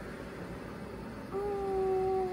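Faint room noise, then about a second and a half in a woman's voice starts one long, steady held note, cooing at a puppy.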